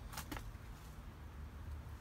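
Faint background noise in a pause: a steady low rumble with a few light clicks in the first half-second.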